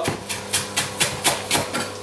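Chef's knife rough-chopping fresh herbs on a wooden end-grain chopping board: quick, even knocks of the blade striking the wood, about four a second.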